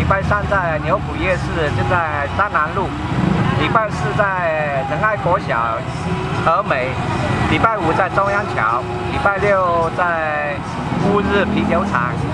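A man speaking Chinese steadily, listing days of the week and places, over a steady low hum.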